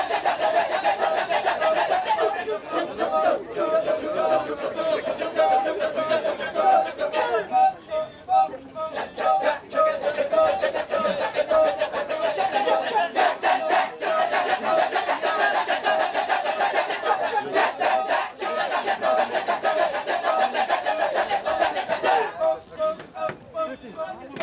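Kecak chorus of dozens of men chanting the fast, interlocking "cak-cak-cak" rhythm together, with dense pulsing that thins out briefly twice.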